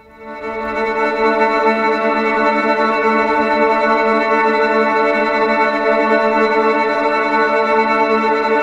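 Native Instruments Straylight granular synthesizer playing a sustained ambient wash with reverb, layered up into a held chord of steady tones. It swells in over about the first second, then holds.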